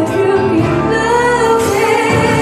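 A female vocalist singing with a live band of keyboards, electric guitars and drums, the voice gliding between held notes over a sustained low accompaniment.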